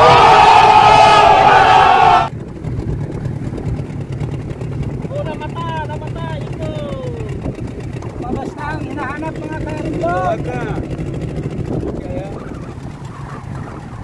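A loud burst of crowd shouting and cheering from a meme sound clip lasts about two seconds and cuts off suddenly. After it a small fishing boat's engine runs with a steady low hum, and voices talk faintly at times.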